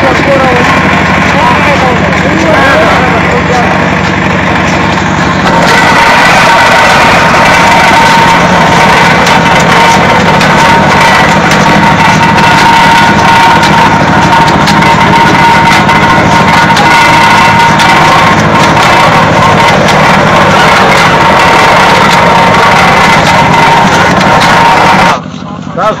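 Engine-driven sugarcane crusher running loudly and steadily while cane stalks are fed through its rollers, with a steady high whine over it from about six seconds in. The machine sound cuts off abruptly near the end.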